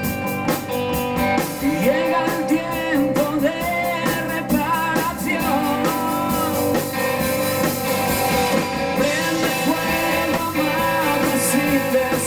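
Rock band playing live: electric guitar, electric bass and drum kit, with a male voice singing.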